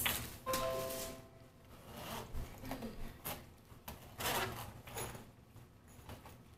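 Zipper of a large hard-shell suitcase being pulled open along its edge, in several short rasping strokes.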